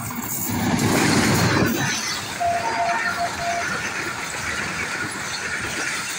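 Diesel-electric locomotive passing close by at speed, loudest in its first two seconds, followed by the steady rolling noise of passenger coaches running past on the track. A few brief faint high tones come in around the middle.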